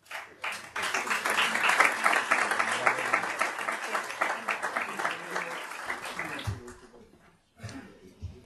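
Audience applauding: dense clapping that starts right away, holds steady, and dies away about six to seven seconds in.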